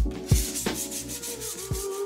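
Background music with a steady drumbeat, over hand sanding on the edge of a microcement-coated counter as the corner is rounded off.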